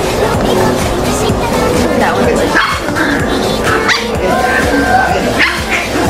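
Small dogs yipping and barking a few times over steady background music.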